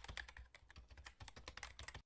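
Faint computer-keyboard typing sound effect: a quick run of clicking keystrokes, several a second, that stops abruptly.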